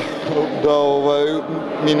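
A man speaking who pauses mid-sentence on a drawn-out, level-pitched hesitation sound of under a second, then goes on talking.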